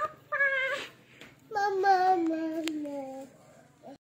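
A toddler's high-pitched wordless vocalising: a quick rising squeal, a short high cry, then one long drawn-out call that slides down in pitch.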